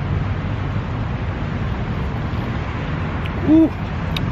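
Steady rumble of road traffic. Near the end a man gives a short, low "ooh" at a sip of piping hot coffee.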